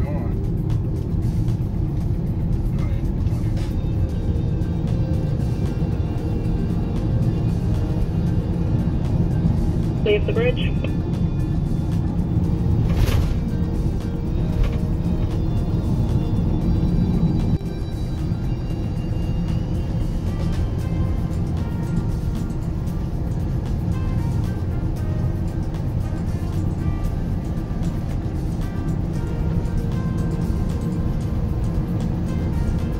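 Steady low road and engine rumble inside a moving escort vehicle's cabin, with background music over it. A single sharp click about thirteen seconds in.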